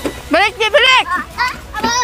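A young child's high-pitched voice babbling and chattering in short phrases, not clear words.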